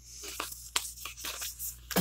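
Paper rustling and scraping as a cardstock tag is slid into a paper pocket on a journal page, with several short, crisp crackles.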